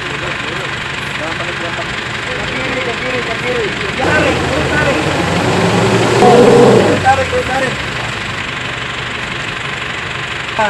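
A 4x4 vehicle's engine running, with people talking and calling out nearby. The sound swells louder for a few seconds in the middle.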